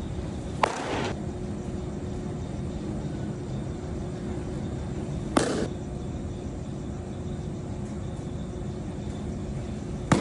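Pitched baseballs popping into a catcher's mitt: two sharp pops about five seconds apart, each with a brief ring-out. A steady hum runs underneath.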